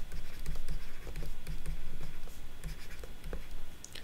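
A stylus writing by hand on a tablet: a quick run of short scratching strokes and light taps as a word is written out.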